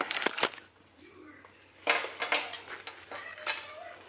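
Handling clatter: a camera and small objects being set down and knocked about on a granite countertop, in a burst of clicks at the start and another run of clicks and rustling from about two seconds in.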